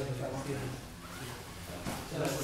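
Indistinct low voices talking in the background, with the brushing and scuffing of two grapplers' bodies moving against each other on a training mat.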